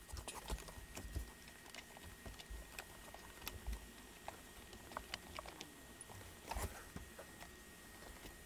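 Faint handling noise: scattered light clicks, ticks and rustles of hands working a wire behind a leather seat-back panel.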